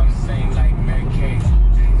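Inside a moving Audi's cabin, a steady low road and engine rumble from the car in traffic, growing heavier about one and a half seconds in.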